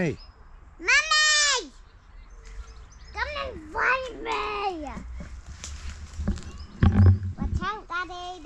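A child's voice calling out in one long, high, drawn-out cry about a second in, followed by more high-pitched child vocalizing, with a few low thumps near the end.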